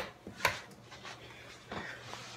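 Handling and movement noise from a handheld phone being carried: a sharp knock right at the start and another about half a second in, then soft rubbing, over a faint low steady hum.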